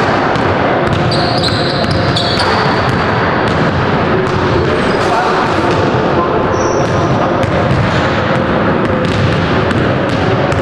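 Several basketballs bouncing on a hardwood gym floor, the bounces overlapping and echoing in the large hall, with indistinct voices and a few short high squeaks, about a second in and again near seven seconds.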